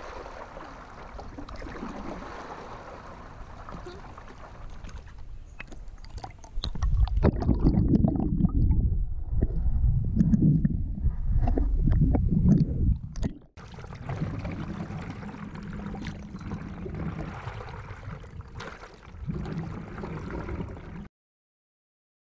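Water against a paddleboard-mounted camera. At first there is light lapping and splashing as the board is paddled. About six and a half seconds in, the camera goes under the surface, and the sound turns into a loud, muffled, low water noise for about seven seconds. It briefly cuts out and returns to lighter surface splashing before the sound stops about a second before the end.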